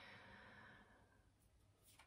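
Near silence, with a faint, soft breath out during the first second.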